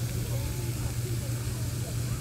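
Steady low hum, unbroken and even in level, like machinery or an engine running.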